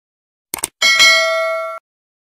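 Subscribe-button sound effect: a quick double click, then a bright bell ding that rings for about a second and cuts off suddenly.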